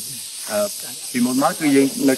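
A man talking in Khmer, over a steady high-pitched hiss that runs underneath.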